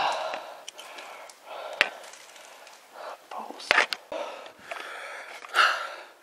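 Footsteps and scuffing over loose rubble and broken debris, with a few sharp knocks and cracks, the loudest about two seconds in and near four seconds.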